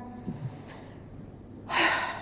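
A woman takes a short, sharp breath in close to a lectern microphone near the end of a quiet pause between sentences.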